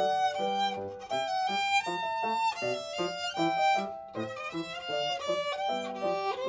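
Violin and grand piano playing together in a light, playful allegretto: the violin carries the melody in held and moving notes over short, detached piano notes.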